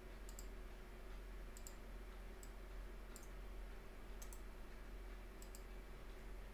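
Faint computer mouse clicks, about ten, several in quick pairs, over a steady low hum.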